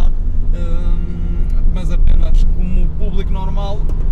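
Steady low rumble of engine and road noise inside the cabin of a Nissan 100NX at motorway speed.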